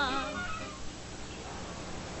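Women's voices holding a final sung note with a wide vibrato, fading out within the first second, followed by the faint hiss of an old film soundtrack.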